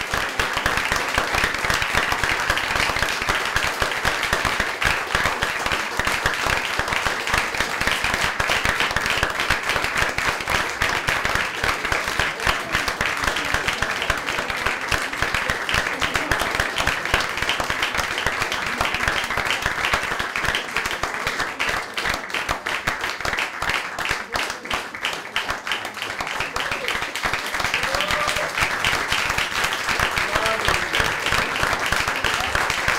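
Audience applauding steadily, a dense patter of many hands clapping, with a few voices showing through near the end.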